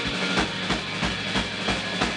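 Live rock band playing without vocals: distorted electric guitars and bass sustained over a steady drum beat, with hits about three times a second.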